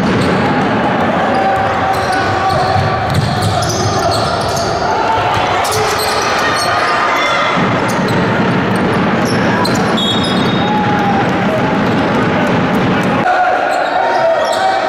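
Live sound of a basketball game in a large gym: the ball bouncing on the wooden court in scattered knocks over a continuous din of players' and spectators' voices, echoing in the hall.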